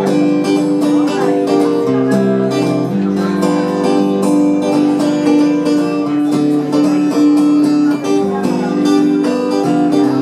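Acoustic guitar played solo and strummed, its chords changing every second or so, in an instrumental break of a country song.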